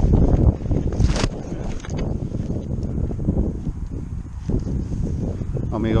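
Wind buffeting the microphone: a low, unpitched rumbling rush, strongest in the first second or so, then steadier.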